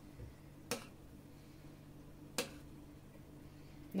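A metal spoon knocks twice against the side of a stainless steel pot while stirring soup, two sharp clicks under two seconds apart, over a faint steady low hum.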